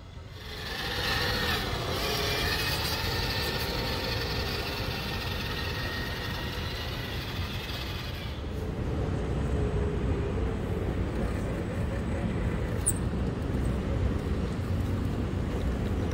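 A radio-controlled scale crawler driving on a dirt trail, its electric motor and gears whining steadily. From about eight seconds in the whine gives way to a lower rumble as the crawler rolls over the metal rollers of a roller slide.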